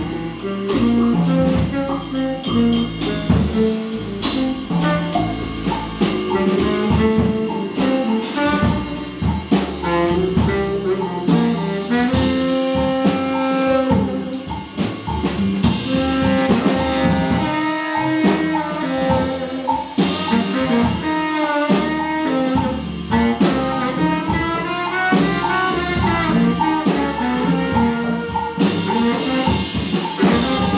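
Live jazz combo playing: a baritone saxophone carries melodic lines over congas and a drum kit with cymbals.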